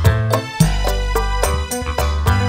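Live dangdut band playing through a PA, with a steady beat and deep bass notes under keyboard and guitar.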